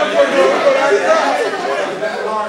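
Several men's voices talking over one another: loud, indistinct chatter.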